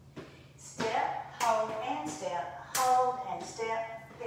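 A woman talking while stepping in cowboy boots on a tile floor, with a few sharp taps among her words.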